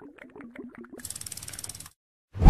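Animated outro sound effects: a short run of stepped, wavering blips with light ticks, then about a second of rapid, even ratchet-like clicking that stops suddenly near the end.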